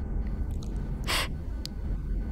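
A man sniffling once, a short sharp breath in through the nose while he is crying, over a low steady aircraft-cabin drone.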